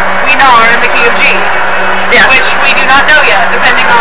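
Speech: a voice talking throughout, over a steady low hum.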